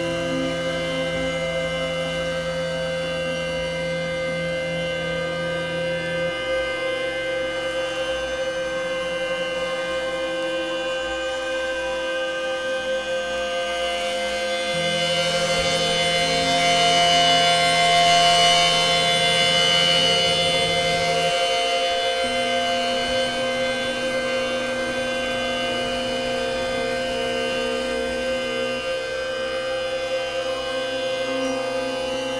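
Ambient synthesizer drone: many steady held tones layered together, with the low bass notes changing every six to seven seconds. A brighter, hissing swell builds in the middle and is the loudest part before it fades back.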